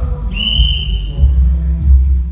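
One sharp whistle blast, about a second long and falling slightly in pitch, typical of a referee's whistle starting play. Background music with a heavy bass runs under it.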